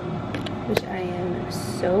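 A steady low hum fills the room, with a single sharp click just under a second in. A woman starts speaking about a second in.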